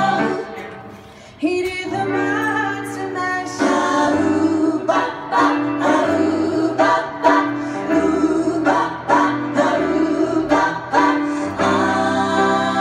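Live vocal music: singing with instrumental accompaniment and a bass line, on long held notes. The music dips briefly about a second in, then comes back on a new held chord.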